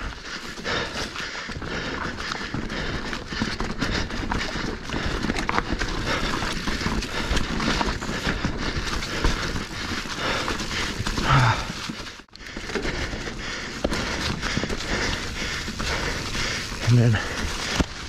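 Specialized Stumpjumper Evo Alloy mountain bike ridden fast downhill over rocks, roots and leaves. Tyres on the dirt, with constant rattling and knocking from the bike and wind noise on the microphone. The sound drops out briefly just after the middle.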